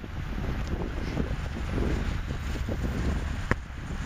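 Wind buffeting the built-in microphone of a handheld Toshiba Camileo Clip camcorder, a low, unsteady rumble, with one sharp click about three and a half seconds in.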